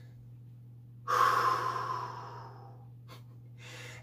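A man's long, forceful breath out about a second in, loud at first and trailing off over a second or so, over a steady low hum.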